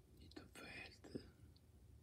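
A brief whisper of about half a second, with a small click just after it, over otherwise near-silent room tone.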